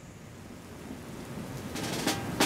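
Heavy rain pouring down and streaming off a roof edge, a steady hiss that fades up and grows louder. A first sharp percussive knock comes in near the end.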